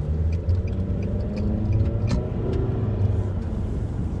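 Car engine and road rumble heard inside the cabin while driving, the engine note rising gradually as the car gathers speed, once and then again.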